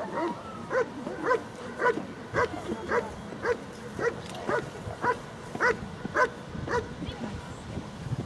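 German Shepherd Dog barking steadily at a motionless helper holding a bite sleeve, about two barks a second: the guarding bark (bark and hold) of a protection-sport routine. The barking stops about seven seconds in.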